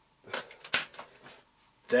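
A plastic accessory tool being fitted onto the tool holder of a Dyson DC24 upright vacuum: a brief rustle, then a sharp plastic click a little under a second in, followed by a few faint ticks.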